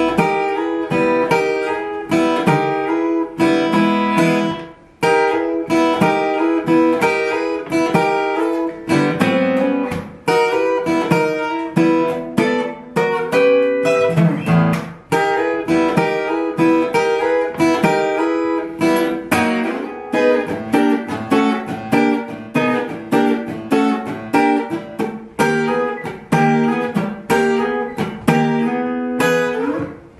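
Steel-string acoustic guitar played fingerstyle in a fast boogie rhythm: steady picked bass notes under sliding chord stabs, with muted percussive strokes near the end.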